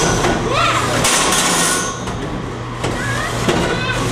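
Beetleweight combat robots fighting in a plastic-walled arena: a spinning weapon and drive motors running, with knocks and a burst of grinding about a second in, under spectators' voices.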